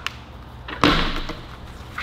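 A single sudden thud a little under a second in, dying away over about half a second, with a faint click at the start.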